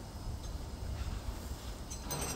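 Steady low outdoor rumble with no distinct event for most of the stretch; near the end, a faint metallic clink as a steel spanner is picked up off the pavement.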